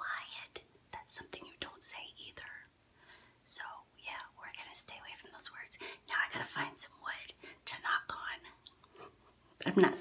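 A woman whispering in short phrases, with a brief pause partway through and another near the end.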